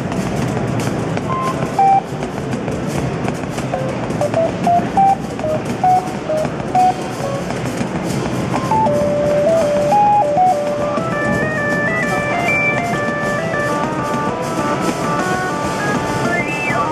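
Korg Monotribe analogue synthesizer playing a sequenced pattern: a single-voice synth line stepping from note to note over a drum pattern with a fast run of ticks from its built-in rhythm section. From about eleven seconds the line moves higher and gets busier.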